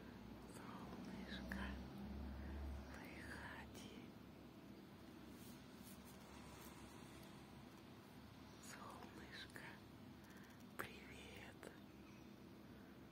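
A faint whispered voice in short snatches over a low rumble that is strongest in the first few seconds, with one sharp click near the end.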